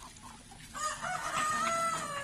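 A rooster crowing once: one long pitched call that starts about three quarters of a second in, holds, and trails off downward at the end, over faint pecking and clucking of feeding chickens.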